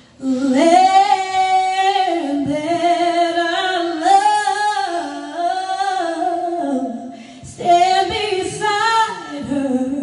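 A woman singing solo and unaccompanied into a microphone, in long held phrases with a brief breath about seven seconds in.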